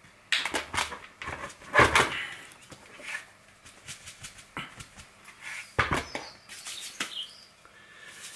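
Hands working mixed-bed ion-exchange resin down into the neck of a nearly full deioniser vessel: irregular knocks, taps and short gritty rustles. The loudest knocks come about two seconds in and just before six seconds, the second one a dull thump.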